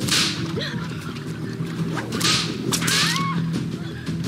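Three sharp whip-like swishes, one at the start and two close together about two and a half seconds in, over steady background music.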